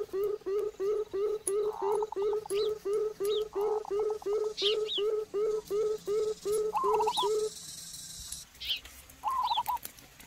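Birds calling: one bird repeats a low hooting note very regularly, about three times a second, then stops about three-quarters of the way through, while other birds give short high chirps and some brief chattering calls over it.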